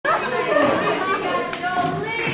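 Several actors' voices talking over one another on a theatre stage, carrying in a large hall.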